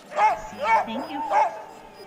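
Sled dogs on a gangline yipping excitedly: three short, high yips about half a second apart while they are being harnessed.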